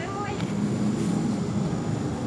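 A quiet low voice murmuring over a steady low hum, with a thin high whine in the background.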